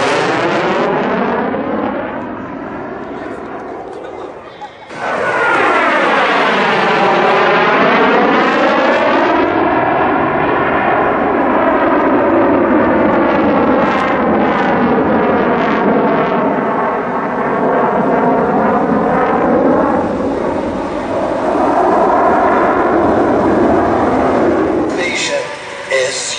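CF-188 Hornet's twin General Electric F404 turbofans running in afterburner, loud, with a sweeping, phasing tone as the jet moves across the sky. The sound eases off for a few seconds near the start and comes back sharply about five seconds in.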